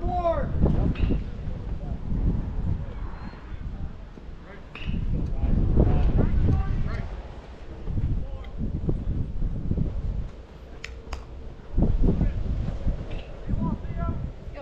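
Indistinct voices with wind rumbling on the microphone in gusts, and two short sharp clicks late on.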